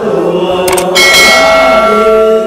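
A group of women singing together, the voices settling into a long held note about halfway through.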